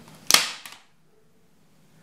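A staple gun firing once, a sharp snap with a fainter click just after, driving a staple through a cord fishing net into a wooden frame.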